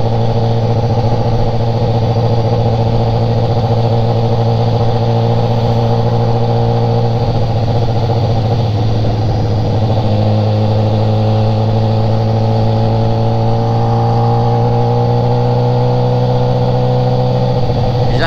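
BMW sport motorcycle engine running at a steady cruising speed on the highway, heard from the rider's seat over wind noise; its pitch creeps slowly upward in the second half as the revs build.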